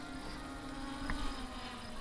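MJX Bugs 5W quadcopter's brushless motors and propellers, a steady faint buzzing hum as the drone flies back under return-to-home, its pitch sagging slightly.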